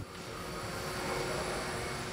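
Steady whirring hum with a faint whine, slowly growing louder, from a box truck converted from diesel to electric drive moving through a workshop hall.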